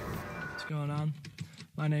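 A man speaking, his voice starting a little under a second in, with a few soft clicks between his words.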